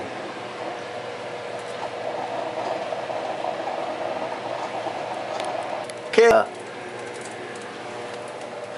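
An egg frying slowly in margarine in a small pan heated only by candles, giving a low, steady sizzle that grows a little fizzier in the middle, with a faint steady hum under it.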